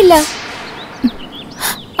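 A falling whoosh, like a drama sound effect, right after a line of dialogue ends, with a few faint bird chirps under it, before speech starts again at the end.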